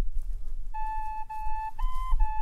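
Closing music: a flute melody of long held notes begins about two-thirds of a second in, over a steady low rumble.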